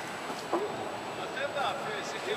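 Brief, faint snatches of voices over a steady background hiss, with a faint steady high-pitched tone.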